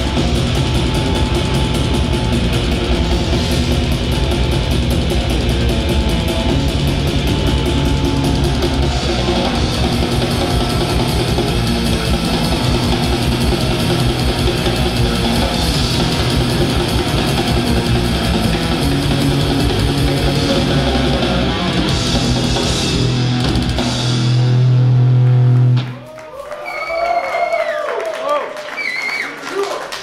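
A metal band playing live: distorted electric guitars, bass and a fast drum kit. The song ends on a loud held low chord that cuts off suddenly about two seconds before the end, leaving a quieter stretch with a few wavering high tones.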